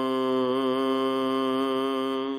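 A single voice holds one long chanted note of the Hukamnama recitation from Gurbani, drawing out the end of a line, with a slight waver about half a second in.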